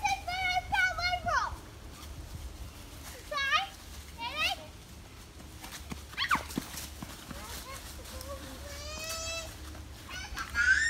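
Children shouting and squealing in play: short, high-pitched calls in bursts, a falling squeal about six seconds in, and a longer drawn-out call near the end.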